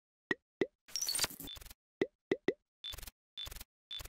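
Sound effects for an animated TV station logo. A few quick plops come first, then a glittering shimmer about a second in and more plops. The effects end in three short whooshes, each with a high ping, about half a second apart.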